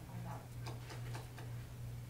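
A quick run of small, light clicks about halfway through, over a steady low hum.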